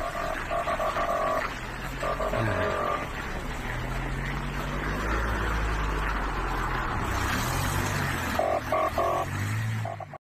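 Vehicle engines running in a slow-moving queue at night, a low steady rumble that rises and falls. Over it, a pulsing beep sounds in short spells near the start, after about two seconds and again near the end.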